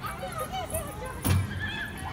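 Children's voices overlapping in a playground, with high-pitched squeals and calls. A single thump comes a little over a second in.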